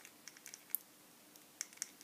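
Faint, sharp little clicks and taps, about half a dozen, as a jointed pole accessory is worked onto a peg on a 1/12 scale action figure; the clearest click comes about three-quarters of a second in.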